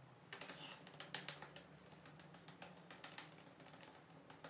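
Fingertips patting and pressing on facial skin during a face massage: a faint, quick run of light, irregular taps starting just after the beginning.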